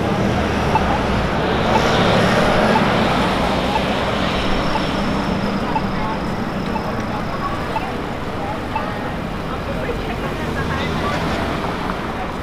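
Busy city intersection ambience: steady traffic with engines running and vehicles passing, under the chatter of pedestrians' voices. The traffic swells about two seconds in.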